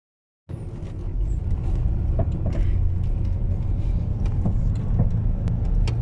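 Car driving, heard from inside the cabin: a steady low engine and road rumble that begins about half a second in, with a few faint clicks over it.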